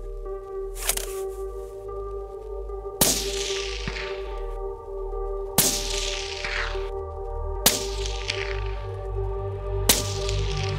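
Five shots from a suppressed Q Fix bolt-action rifle in 6.5 Creedmoor, fired about two seconds apart, each followed by a fading echo.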